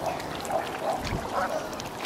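Waterfowl calling: a run of short calls, several within two seconds.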